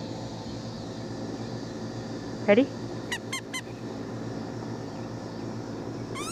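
German Shepherd puppy giving three quick high-pitched yips in excitement during a game of fetch, then starting a whine at the very end, over a steady background hum.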